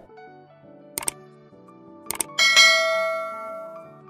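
Soft background music with a subscribe-button sound effect over it: two sharp clicks, then a bright bell-like ding that fades away over about a second and a half.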